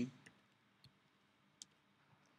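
A few faint computer-keyboard key clicks as a folder name is typed and entered, the clearest two a little under a second apart, the second the loudest.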